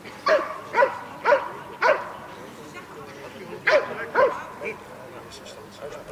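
A dog barking at the helper: four sharp barks about half a second apart, a pause, then three more.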